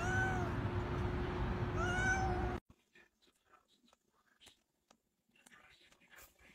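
A cat meowing twice, short arched calls about two seconds apart, over a steady background hiss and hum. The sound cuts off suddenly about two and a half seconds in, leaving near silence with faint soft taps.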